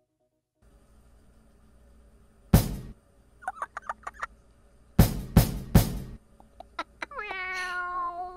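Cartoon sound effects: a bass drum thumped once, then a few short squeaks, then three quick bass drum beats, ending with a cat's long meow that falls in pitch near the end.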